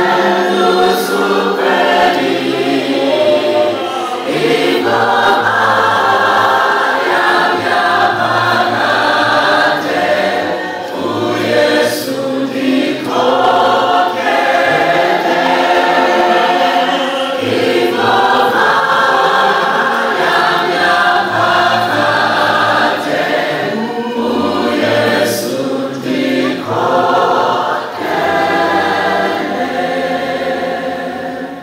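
Many voices singing a hymn together, in phrases a few seconds long with short breaks between them.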